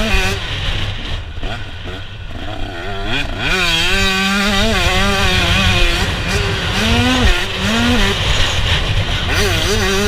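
A 2017 Husqvarna TC125's 125cc single-cylinder two-stroke engine, heard from on the bike: off the throttle for the first couple of seconds, then revved hard about three seconds in and held high, with short dips and pick-ups in pitch near the end as the rider works the throttle and gears.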